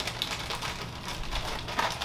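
Quick, light crackling and rustling of a clear plastic bag and thin bikini strings being handled and untangled by hand.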